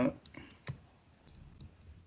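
A handful of sharp, irregular clicks from someone working at a computer, picked up by a video-call microphone; the loudest comes just under a second in.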